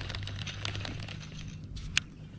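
Baitcasting reel being wound in by hand, with a run of small clicks and rustling handling noise, then one sharp click just before the end.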